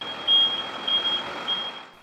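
A fire engine's reversing alarm sounding a high-pitched beep that pulses a few times, over a steady rushing noise.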